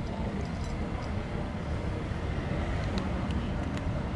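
Steady low rumble of city street traffic, with a few faint short clicks near the end.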